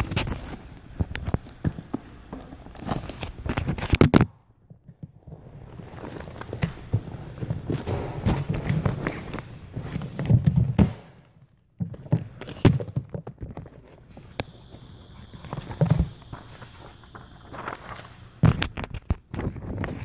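Handling noise on a phone's microphone: irregular rubbing and scuffing with scattered knocks and thumps as the phone is moved about and held against things, with two short near-silent gaps and a thin steady high tone for a few seconds near the end.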